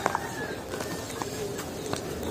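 Faint bird calls in the background, with one sharp click just after the start.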